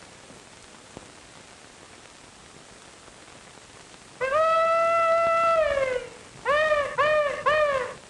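Film-soundtrack hiss, then a hog call: about four seconds in, a long, high, held cry that drops at its end, followed by three short calls in quick succession.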